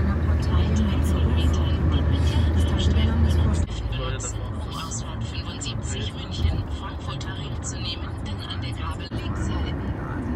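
Road noise inside a moving car's cabin at motorway speed: a steady low drone of tyres and engine. The drone drops sharply a little under four seconds in, with faint indistinct voices over it.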